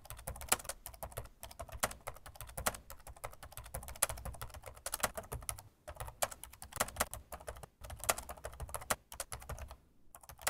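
Typing on a computer keyboard: a rapid, uneven run of key clicks with a few short pauses.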